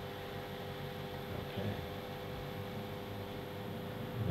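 Room tone: a steady hiss with a constant low electrical hum running under it, no distinct events.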